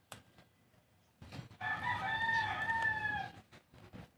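A rooster crows once, a single held call of under two seconds starting about a second and a half in. Around it, a small spoon scrapes and clicks against the tin can as it stirs the soil.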